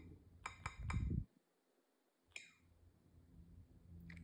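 Key-tap clicks from typing on the BrailleNote Touch Plus touchscreen keyboard: three quick clicks about half a second in and a single one later, with a soft low thump near one second. They sound like little taps on a keyboard, the only audio the device gives while KeySoft is off.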